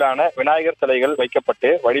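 Speech only: continuous news narration in Tamil, with no other sound standing out.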